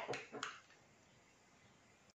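Near silence: room tone, with two faint clicks in the first half second.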